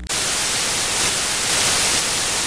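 Television static sound effect: a loud, steady hiss of white noise that cuts in abruptly, edited in as the video's closing transition.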